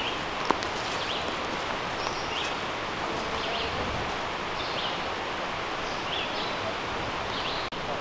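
A small bird calling over and over, short high notes about once a second, over a steady outdoor background hiss.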